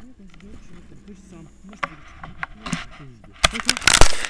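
Low voices, then, in the last half second, a burst of loud clicks and scrapes of handling noise as the camera is moved and the tandem harness is worked on.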